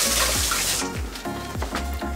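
Kitchen sink tap running for just under a second, then shutting off, over background music with a steady beat.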